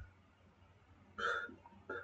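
Near silence, broken about a second in by a short vocal sound from a man, like a quick catch of breath in the throat, and a second, briefer one near the end.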